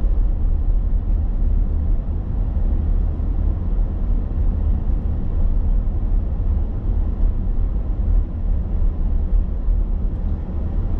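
Car cabin road noise while driving at town speed: a steady low rumble of tyres and engine heard from inside the car.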